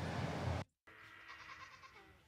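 A low room hum cuts off abruptly just over half a second in, and after a moment of silence faint outdoor ambience follows with a few faint farm-animal calls.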